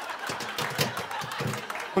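Studio audience chuckling and murmuring, with a run of light metallic clicks and clinks from the oven rack being handled.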